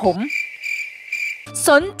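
A cricket-chirping sound effect: a high, pulsing trill lasting about a second, set between two spoken lines.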